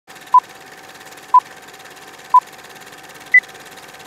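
Film-leader countdown sound effect: three short beeps one second apart, then a single higher beep a second later, over a steady hiss with a faint low hum.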